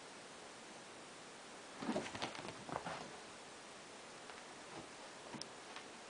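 Cats scrambling and scuffling on fabric sofa cushions in play: a short burst of rustling about two seconds in, then a couple of faint clicks near the end, over a steady hiss.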